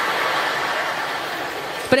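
Large theatre audience laughing together, a dense wash of laughter that eases off slightly, with a man's voice coming in near the end.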